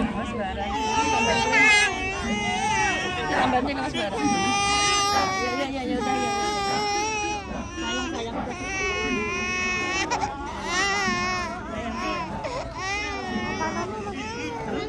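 Several high, wavering voices overlapping without a break, their pitch gliding up and down.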